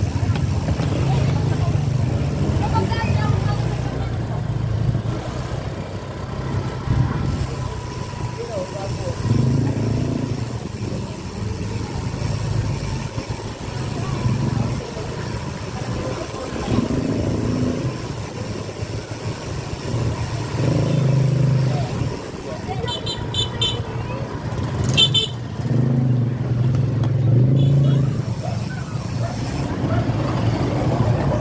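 Motor scooter engine running at low speed just ahead in street traffic, its sound rising and falling every few seconds. Voices come from people along the street. Two short bursts of high ringing come about three-quarters of the way through.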